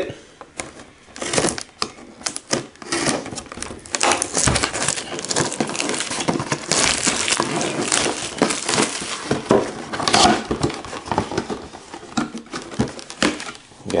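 Clear plastic shrink-wrap being torn and pulled off a cardboard box, crinkling and crackling continuously for about twelve seconds.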